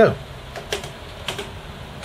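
Fingertip tapping on the keycaps of a Commodore Amiga A500 keyboard, a few light clicks. The taps test whether knocks trigger its intermittent flashing-Caps-Lock fault, which the owner takes for a bad connection.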